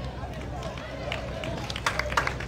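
Hand claps starting about a second in and coming quicker near the end, over faint crowd voices and a steady low hum.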